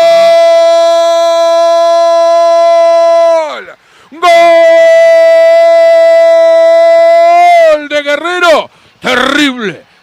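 A radio football commentator's long, loud goal cry: two sustained shouts of 'gol', each held at a steady high pitch for about three and a half seconds before falling away. A few quick excited words follow near the end.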